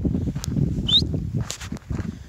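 Wind buffeting the microphone in a steady low rumble, with a few short crunches of footsteps on gravel and one brief high rising chirp about a second in.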